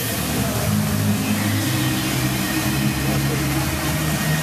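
Water jets of a choreographed musical fountain hissing and splashing, with the show's music playing through loudspeakers as held low notes that change pitch every second or so.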